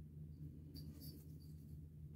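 Near silence: room tone with a steady low hum and a few faint high ticks about a second in.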